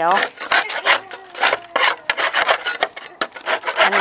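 Quick rasping strokes, about three or four a second, of something scraping the inside of a wooden bait hive box. The old comb and debris are being scraped out to clean the box before it is baited again for bees.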